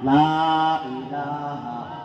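A man's voice chanting a repeated zikr refrain through a microphone, in two long held phrases, the first louder than the second.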